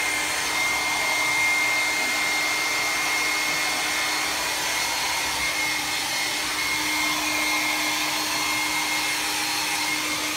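Handheld blow dryer running steadily, blowing air over a wet dog's coat, a rush of air with a steady motor whine.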